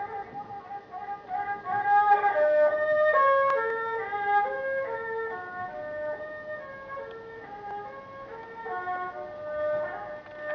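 Erhu, the two-stringed Chinese bowed fiddle, played solo: a slow melody of held notes that slide from one pitch to the next.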